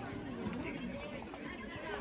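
Overlapping, indistinct chatter of several voices from spectators and young players at a youth field hockey game, with a single sharp click near the end.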